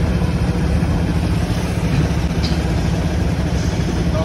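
Motorcycle engine idling steadily, a loud low rumble.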